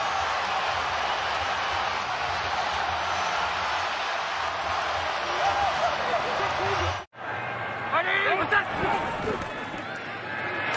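Large stadium crowd cheering steadily after a game-winning field goal. About seven seconds in the sound cuts out for an instant, then a quieter stadium crowd with a few short shouts follows.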